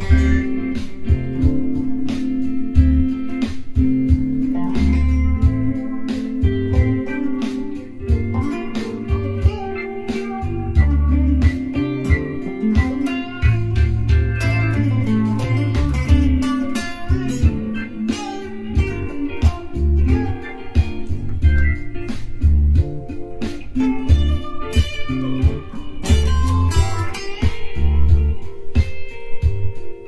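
Electric guitar improvising in D minor: quick plucked single notes over held chords and recurring low bass notes.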